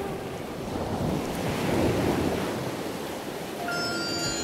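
Ocean surf washing onto a beach, the wash swelling about halfway through and then easing off. Sustained musical tones come in near the end.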